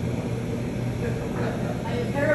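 Helicopter running overhead, a steady low drone, as it lifts an aerial saw on a long line.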